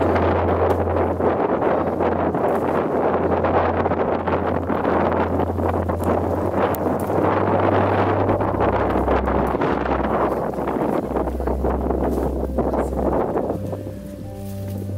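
Loud, steady wind buffeting the microphone, with low, held bass notes of background music underneath that change pitch a few times.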